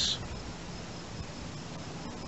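Faint high insect chirping, pulsing evenly about four times a second, over a low steady hiss.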